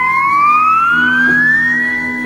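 Isolated slide guitar holding a high note, then sliding smoothly up about an octave and sustaining it, with a lower note ringing beneath from about a second in.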